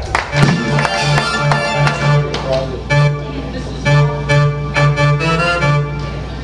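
Live rock band playing, heard from the audience: sustained organ-like keyboard chords over a pulsing bass line, with drum hits throughout.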